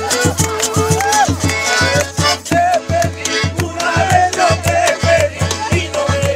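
Cajamarca carnival coplas sung by voices over a fast, steady strumming of acoustic guitars.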